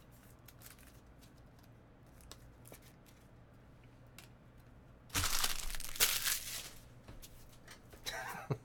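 A foil trading-card pack torn open and its wrapper crinkled: a few seconds of faint handling clicks, then a loud burst of tearing and crackling about five seconds in that lasts around two seconds.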